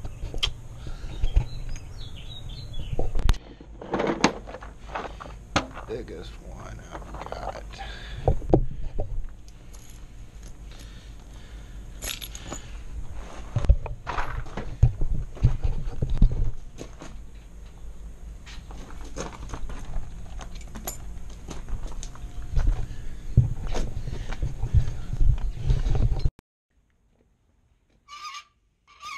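Irregular metallic clicks and knocks, with keys jangling and footsteps, from hands-on work at a steel gate lock, over a steady low rumble. The sound cuts off suddenly near the end.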